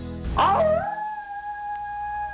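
A single long canine howl, used as a sound effect: it swoops up and wavers about half a second in, then holds one long note that sinks slightly, over the tail of background music.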